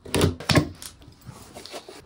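Flat screwdriver slitting the packing tape on a cardboard box as the flaps are pulled open: a few short, sharp rips and knocks in the first second, then quieter rustling of cardboard.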